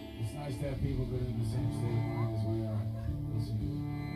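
Live band playing a quiet passage: sustained electric guitar and bass guitar notes, with a few soft high percussion strokes.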